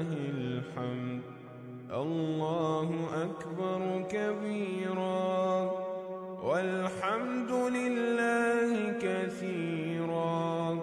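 Arabic devotional chanting as background music: a single male-range voice sings melismatic, gliding phrases over a steady held drone, with short pauses between phrases.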